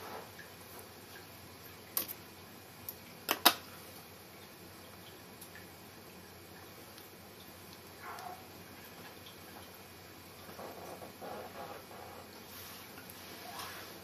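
Small fly-tying scissors snipping: one sharp click about two seconds in, then a louder double click a second later. Faint handling sounds follow.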